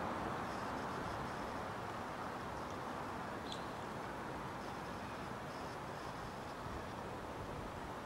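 Steady outdoor background noise, an even hiss with no distinct source, and one faint light click about three and a half seconds in, while the wire cage is worked off a champagne bottle.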